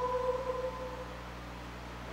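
A congregation's held last note of a hymn line fading out in the first moments, then a low steady hum between verses.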